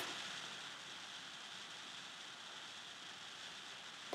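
Faint steady hiss of the recording's background noise, with no other sound.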